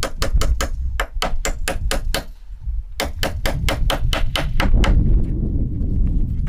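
Rapid hammer blows on wood, about six a second, while a handrail board is fixed to wooden cabin steps, in two runs with a short break about two seconds in.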